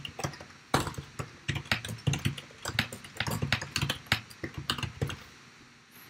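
Typing on a computer keyboard: a quick, irregular run of keystrokes as a short line of text is typed, stopping about a second before the end.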